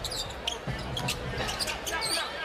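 A basketball being dribbled on a hardwood court, a string of short bounces over the steady noise of an arena crowd.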